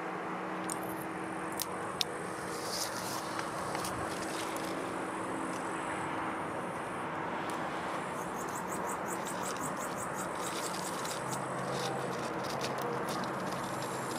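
Outdoor background: a steady low hum and rushing noise, with a few small clicks early on, faint high chirping, and a rapid run of high ticks a little past the middle.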